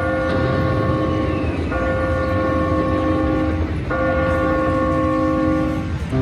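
Wonder 4 Boost Gold slot machine's bonus-trigger sound: a held electronic chord sounded three times in a row, each about two seconds long, over a low background din.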